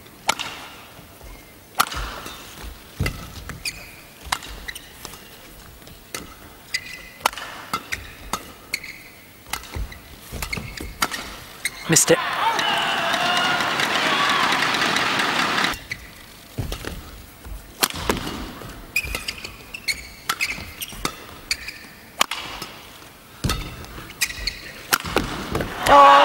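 Sharp strikes of badminton rackets hitting the shuttlecock, roughly one a second, during rallies. Crowd noise with cheering swells up for a few seconds in the middle.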